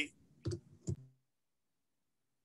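Two short clicks about half a second apart, then the audio drops to dead silence as the speaker's microphone is cut off on mute.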